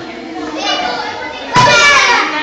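Children's voices talking at a table in a classroom, with one voice breaking out much louder and higher near the end.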